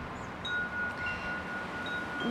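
Wind chimes ringing: a few clear, held notes at different pitches, one of them sounding for well over a second before the next sentence starts.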